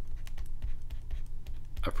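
Pen stylus tapping and scratching on a graphics tablet during handwriting, an irregular string of light clicks over a steady low electrical hum.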